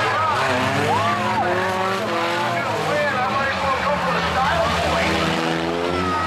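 Several stock-car engines running and revving at once, their pitches rising and falling as the cars slide around an oval track on steel plates welded to their rear rims in place of tyres.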